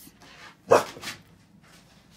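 A pit bull dog barks once, a little under a second in.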